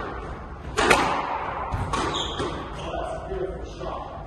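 Squash rally: sharp knocks of racket on ball and ball on the court walls and floor, the loudest a quick double knock about a second in and a few lighter ones around two seconds, echoing in the hall.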